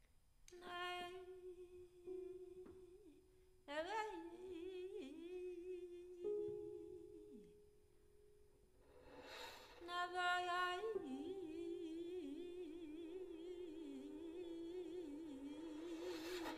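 A woman's voice and a bowed violin holding long, wavering notes close to one pitch. The sound enters about half a second in, fades around the middle and swells back a couple of seconds later.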